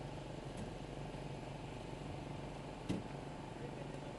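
Steady low hum of SUVs creeping along at walking pace, with one short knock about three seconds in.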